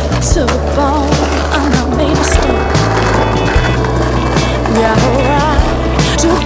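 Skateboard wheels rolling on pavement with a few sharp knocks, under a music track with a steady bass line and a wavering melody.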